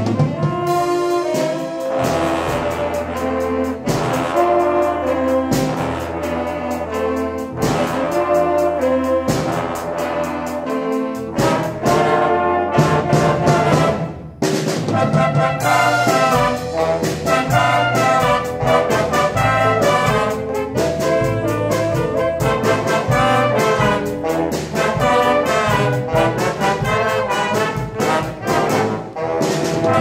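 School jazz band with full horn section playing a brassy cha-cha, with trombones and trumpets out front. The band restarts right at the opening after a brief stop and breaks off again briefly about fourteen seconds in.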